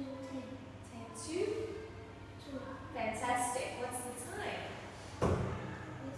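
Quiet speech, with a single loud thump near the end.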